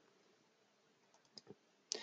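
Near silence, with two faint clicks close together about a second and a half in: a computer mouse or key being clicked to advance the slides.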